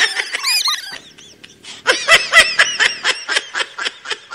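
High-pitched laughter from a comedy sound effect. There is a short burst at the start, a brief lull, then rapid repeated 'ha-ha' pulses from about halfway through to the end.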